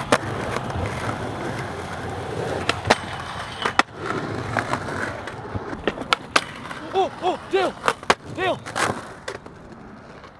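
Skateboard wheels rolling on pavement, with a series of sharp clacks as the board is popped, lands and hits the ledge. The loudest clack comes about three seconds in, and the rolling sound thins out after the first few seconds.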